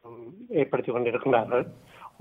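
A man speaking in a studio discussion; speech only.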